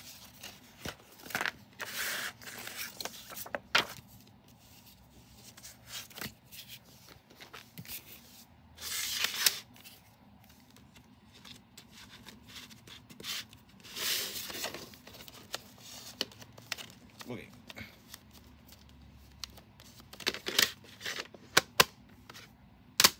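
A paper CD booklet being handled and its pages turned, in several short rustles. Near the end, a plastic CD jewel case being handled, with a few sharp clicks.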